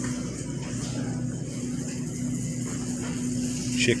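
Steady low hum of a big store's background noise, with a constant low tone running under it.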